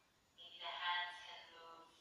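Music with a drawn-out, singing-like voice: one phrase starts about half a second in and fades away near the end, thin with no low end.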